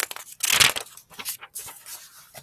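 Paper rustling and crinkling, with one louder rustle about half a second in and a few small clicks, like a book page being handled.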